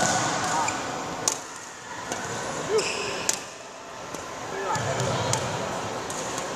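Badminton footwork on a court floor: shoes thudding and scuffing as a player shuffles and lunges through shadow footwork, with two sharp smacks, about two seconds apart.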